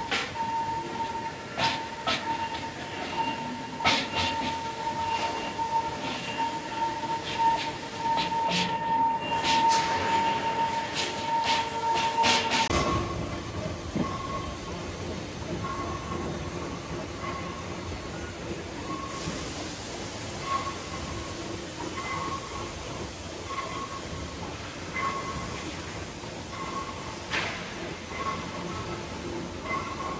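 Wooden mallet striking a die-cast aluminium engine block, irregular sharp knocks over a steady machine whine. About 13 seconds in, the knocking gives way to steady factory-floor noise with a faint beep repeating about every second and a half.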